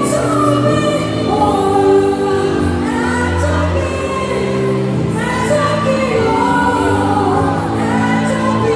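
Live gospel music: a young boy singing a melody over band accompaniment and backing voices, amplified through a stage sound system.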